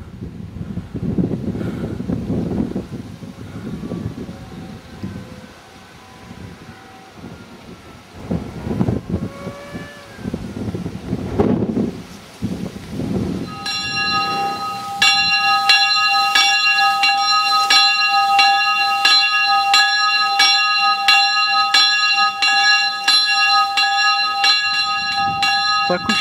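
A church bell rung from a tower, struck over and over in quick succession with its tone ringing on between strokes. It starts about halfway through and grows louder a second later. Before it there is only a low rumbling noise.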